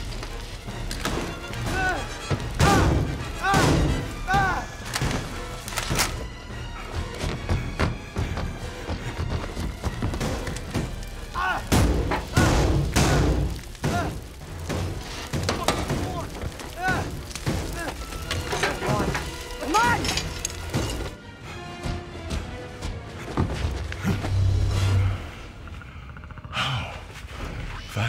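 Action-film fight soundtrack: a dramatic music score under a string of heavy thuds and impacts, with wordless cries and grunts. It turns quieter for the last several seconds.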